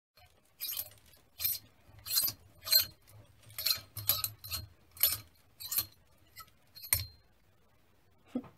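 A series of about ten light, glassy clinks at irregular intervals, roughly one a second; the last one rings on briefly.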